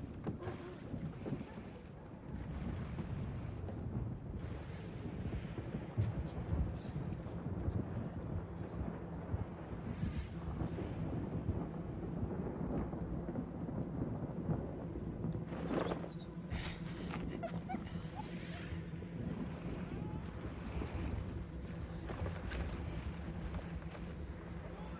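TV drama soundtrack: low wind-like rumble and crowd ambience on a shoreline. A low steady hum joins about a third of the way in, and there is one sharp click about two-thirds through.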